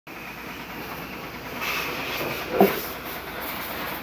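Self-service car wash high-pressure sprayer running: a steady hiss with a faint whine that grows louder about one and a half seconds in, with a brief vocal sound just past the middle.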